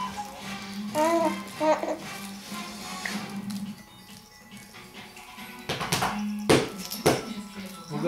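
A baby cooing in a few short sing-song calls about a second in, over a steady low hum. Near the end come three sharp knocks, the loudest sounds.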